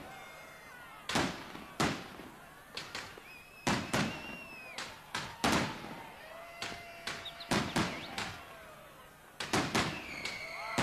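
Fireworks going off: an irregular series of sharp bangs, about two a second, with thin whistling tones gliding between some of them.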